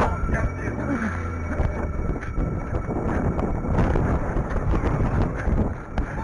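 Body-worn camera jostled by a running wearer: wind buffeting the microphone over a run of knocks from footfalls and gear rubbing.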